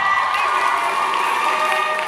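A school assembly audience cheering and shouting, a steady high-pitched wall of voices.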